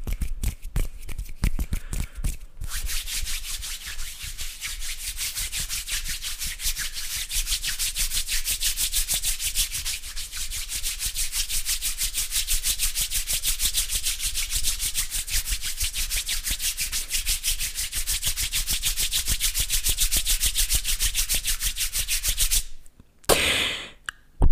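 Palms rubbing briskly together right at a microphone, a fast, even rasping rhythm that starts after a few seconds of scattered hand clicks. It runs for about twenty seconds and stops just before the end after a short, louder swish.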